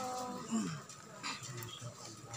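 Faint, brief human voices, with a short falling vocal sound about half a second in.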